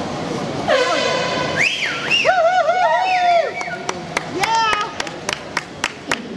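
A high-pitched call with a quavering, wavering pitch, dropping at its start and holding for about three seconds, then a short rising call. It is followed by a quick series of sharp clicks near the end.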